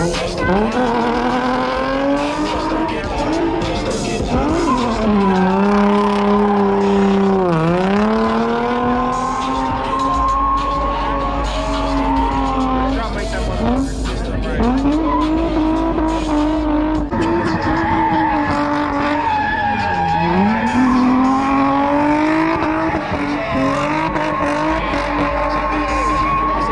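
A car's engine held at high revs while it spins its tyres through burnouts and donuts, with tyre squeal. The pitch sweeps up and down and dips deeply twice, about 8 and 20 seconds in.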